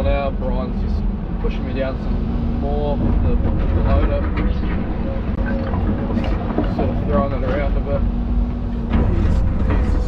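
Excavator engine and hydraulics heard from inside the cab: a steady low diesel drone, with a hydraulic whine that shifts in pitch as the boom and bucket move. Occasional knocks are heard, from concrete chunks being moved.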